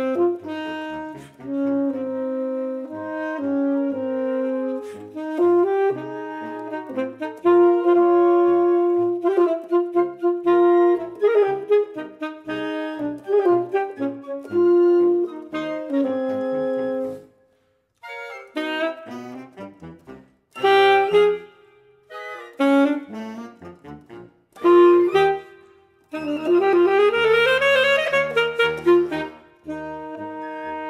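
Selmer Serie II alto saxophone playing the second alto part of a concert-band march, with other lower parts sounding under it. The phrases stop briefly a few times, and near the end a quick rising run of notes climbs over sustained low notes.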